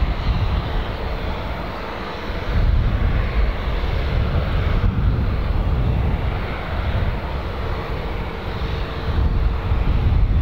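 Embraer Super Tucano's single turboprop engine (a Pratt & Whitney PT6) running at low power as the aircraft taxis, with a faint steady whine. Wind buffets the microphone with an uneven low rumble.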